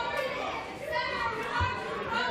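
Protesters shouting in a large hearing room: raised, high-pitched voices that carry no clear words.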